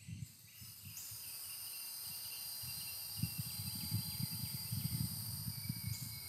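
Outdoor ambience: a steady high-pitched insect drone, with a low crackling rumble on the phone's microphone that starts about half a second in and keeps going.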